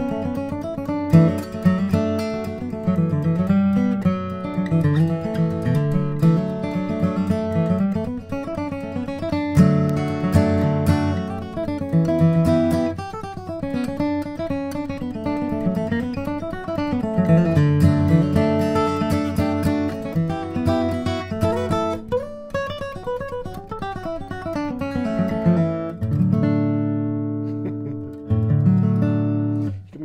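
John Arnold-built D-18-style dreadnought acoustic guitar, mahogany-bodied, played with a pick: strummed chords mixed with moving bass-note runs. Near the end a few low notes are held and left to ring.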